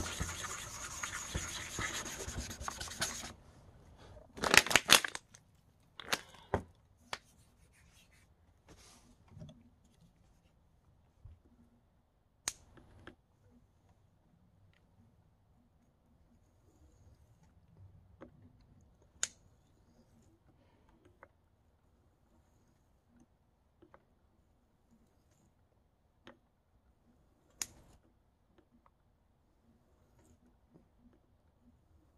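A Venev diamond sharpening stone being wiped down to clear the swarf clogging its surface: about three seconds of steady rubbing, then a short, louder burst of rubbing a second or so later. After that, only sparse light clicks and taps.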